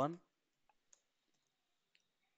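Faint keystrokes on a computer keyboard: four or five separate clicks, spread out irregularly.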